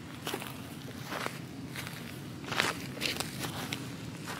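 Footsteps on garden soil and dry leaves: a few irregular, crackly steps each second over a low steady rumble.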